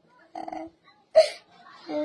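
A small boy crying: a brief whimpering sound, then a little past a second in one short, sharp sob that catches like a hiccup.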